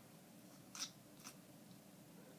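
Near silence with two faint, short mouth clicks about half a second apart, from lips parting as liquid lip color is brushed on.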